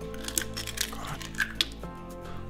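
Eggs being cracked and their shells pulled apart over a plastic blender jar: a few short, sharp cracks of shell, heard over steady background music.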